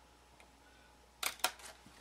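Handheld circle craft punch pressed down through cardstock to cut a notch: quiet at first, then a quick cluster of sharp clicks and snaps a little over a second in as the punch cuts.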